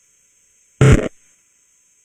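One short, loud electronic buzz about a second in, lasting under half a second, over near silence with a faint steady high hiss.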